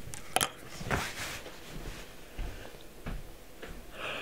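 Handling and movement noise: a sharp click about half a second in, a brief rustle about a second in, and a few faint knocks after that.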